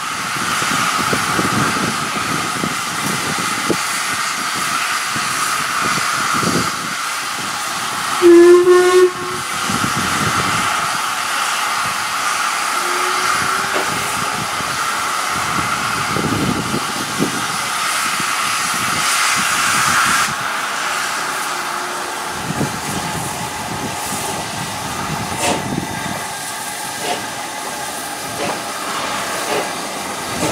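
LMS Stanier Black Five 4-6-0 steam locomotive hissing steam steadily, with one loud whistle blast lasting about a second, about eight seconds in. From about halfway through come slow, uneven exhaust chuffs as it moves off with its train.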